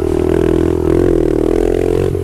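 A Honda CRF70 pit bike's small single-cylinder four-stroke engine running at a steady speed while riding, its pitch wavering only slightly.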